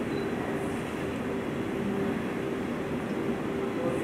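Steady low mechanical hum, a few even tones over a constant haze of noise.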